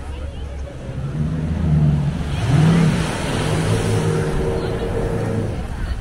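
An engine running and revving: its low pitch climbs and dips about halfway through, then holds steady for a couple of seconds, over beach noise.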